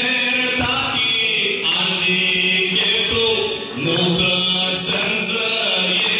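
A band playing music with long held melody notes, each lasting about a second before the next comes in.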